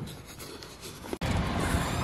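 Soft rubbing and handling noise of a hand over a phone's microphone. Just over a second in it cuts abruptly to a louder, steady background noise.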